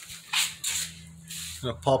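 Brief rustling and scraping from the phone being swung around by hand, over a faint steady low hum; a man's voice starts near the end.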